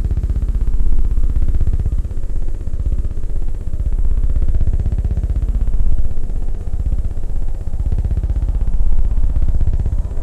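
Live-coded electronic music from TidalCycles: a dense, very fast low pulse like a buzz, with a sweep rising and falling through it every couple of seconds.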